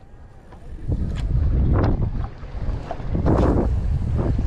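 Wind buffeting the microphone in gusts, a low rumble with noisy swells, rising about half a second in.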